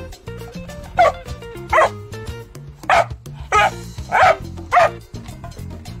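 A Dalmatian barking six times in separate, unevenly spaced barks, over backing music.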